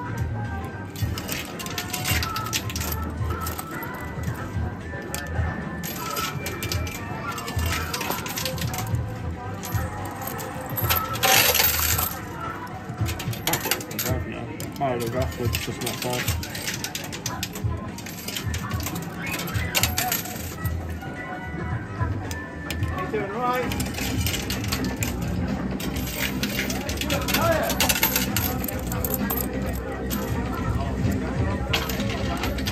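2p coins clinking and clattering in a coin pusher machine as coins are dropped in and knocked across the metal shelves, with a louder clatter about eleven seconds in. Arcade background music runs underneath.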